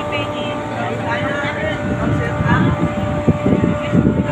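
A few voices talking over a faint steady hum, then a low, uneven rumble from about halfway through.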